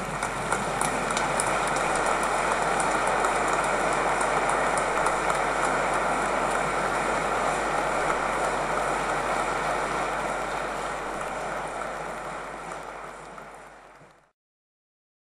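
Congregation applauding steadily in a large church, fading out near the end.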